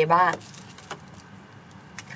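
A woman's voice finishing a word in Thai, then a pause with faint hiss and a couple of small clicks.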